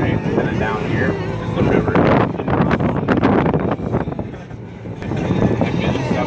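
Indistinct talking inside a moving vehicle over a steady low cabin rumble, with a burst of rattling and knocks about two seconds in.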